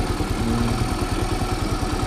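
Kymco Super 8 scooter engine idling steadily, a quick, even run of firing pulses with no change in speed.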